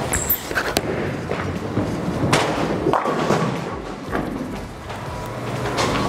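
A bowling ball is released onto the wooden lane with a thud and rolls, then hits the pins about two and a half seconds in, with a few smaller knocks after.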